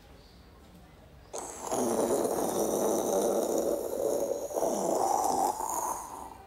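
A man making a jet-plane noise with his mouth: a rushing, breathy vocal drone that starts about a second in and lasts about four and a half seconds, with a short dip near the five-second mark.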